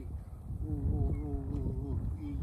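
A man's voice holding one long, wavering note for over a second, starting about half a second in, not formed into words.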